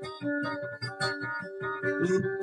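Live dayunday music in an instrumental passage: a guitar picking repeated plucked notes over a sustained keyboard accompaniment.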